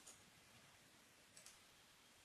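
Faint computer mouse clicks in near-silent room tone: one right at the start, then two close together about a second and a half in.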